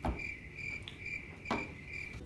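Cricket chirping, used as the stock 'crickets' comedy sound effect for an awkward silence: a steady run of short high chirps, about four to five a second. One light knock comes about one and a half seconds in.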